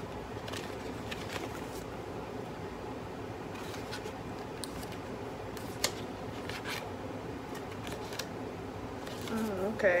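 A small paper card envelope being opened and unfolded by hand: scattered light crinkles and clicks of stiff paper, one sharper snap about six seconds in, over a steady low background hum.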